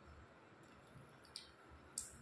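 Faint clicks of small painted wooden domino blocks being set upright on a tile floor: a light click about halfway through and a sharper one at the very end.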